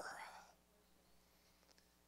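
Near silence: room tone with a faint steady hum, after a man's voice trails off in the first moment.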